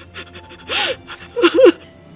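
A woman's distressed gasping cries: a breathy gasp just under a second in, then a short wailing cry about half a second later, over steady background music.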